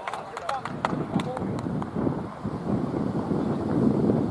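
Indistinct voices over a rough, rumbling background, with a quick irregular run of sharp clicks or taps in the first two seconds.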